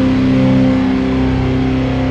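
PRS SE 24 electric guitar played through an amp, with chords ringing out in long sustained notes.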